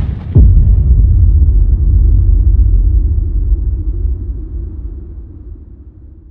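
Cinematic boom sound effect: a deep hit about a third of a second in, then a low rumble that slowly fades away.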